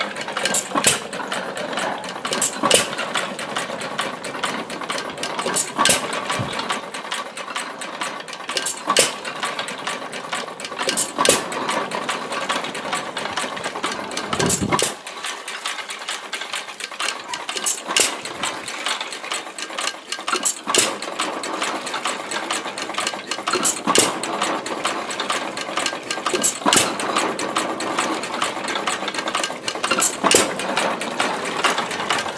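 1918 Baker Monitor 1¼ hp upright hit-and-miss pumping engine running. It fires with a sharp bang about every three seconds and coasts between firings, while the geared pump drive keeps up a steady clatter.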